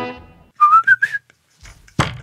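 A strummed guitar chord rings out and fades, then a short whistle rises in pitch over about half a second. A sharp knock comes at the very end.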